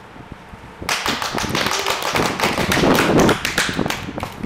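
A quick, dense run of irregular taps and clicks that starts about a second in and keeps on.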